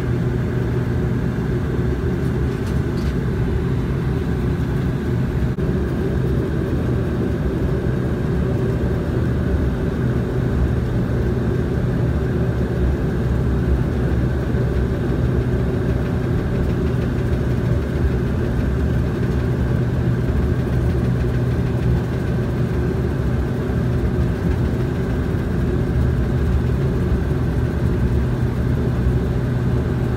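Steady drone of a Bombardier Q400's Pratt & Whitney PW150A turboprop engines and six-bladed propellers at taxi power, heard inside the cabin. It is a loud, even hum with several fixed tones and no change in pitch.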